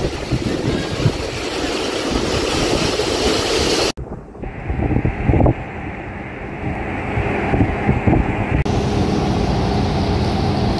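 Wind buffeting the microphone over the noise of fast-flowing floodwater. The sound changes abruptly about four seconds in, where the footage cuts to a swollen river rushing under a bridge.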